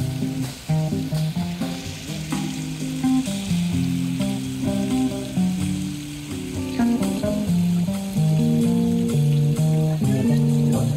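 Live jazz from electric guitar, upright double bass and drum kit, the guitar playing a line of single notes over plucked bass notes, with a steady high hiss laid over the music.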